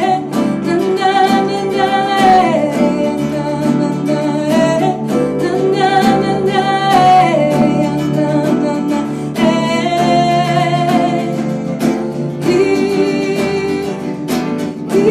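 A woman singing long held notes, sliding down in pitch now and then, to her own acoustic guitar accompaniment.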